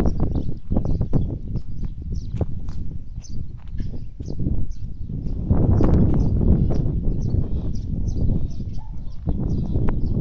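Wind rumbling on the microphone, heaviest from about five and a half seconds in, over scattered footsteps and handling clicks on grass and dirt, with small birds chirping repeatedly in the background.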